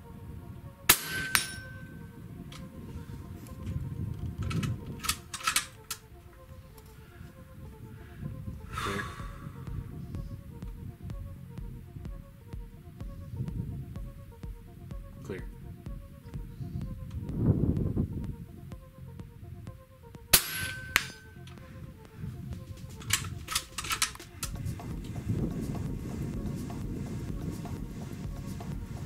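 Two shots from a Hatsan Hercules .30 cal PCP air rifle, about 19 seconds apart, each a sharp crack with a short ring after it. Lighter clicks and knocks come between them. Background music plays throughout.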